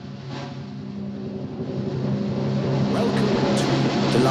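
Opening title music for a debate series: a low steady drone with a rushing, noisy texture that builds gradually louder, with a few sharp clicks near the end.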